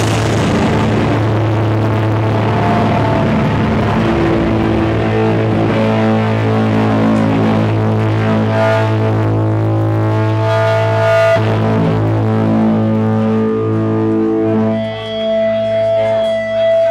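A live powerviolence band's distorted electric guitars and bass ring out with feedback as the drums drop out in the first seconds, leaving long held, droning notes. A thin high feedback tone comes in near the end.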